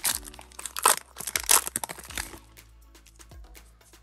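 Foil wrapper of a Pokémon trading card booster pack crinkling and tearing as it is opened, a dense crackle for about two seconds, then quieter handling of the cards with a few light clicks.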